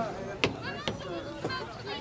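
A few sharp knocks or claps, the loudest about half a second in, over background chatter of voices.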